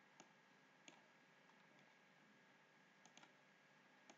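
Near silence with a few faint computer mouse clicks: one, then another about a second in, and a quick pair near the end.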